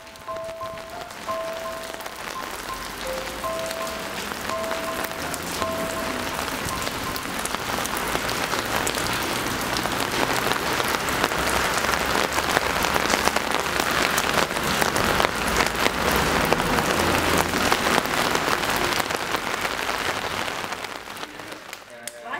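Heavy rain falling on wet pavement, a steady hiss that grows louder through the first half. Over it, in the first seven seconds, a slow run of short, high, soft musical notes.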